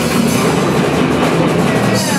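Live rock band playing loud and steady, with electric bass and a drum kit; an instrumental stretch between sung lines.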